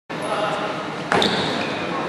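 Unclear voices echoing in a large indoor sports hall, with a sharp knock and a short high squeak about a second in.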